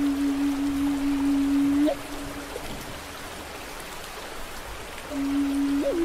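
Native American flute holding one long, low, breathy note over steady rain and a flowing stream. The note breaks off about two seconds in, leaving the rain alone for about three seconds. The flute then comes back on the same note and steps up to a higher one near the end.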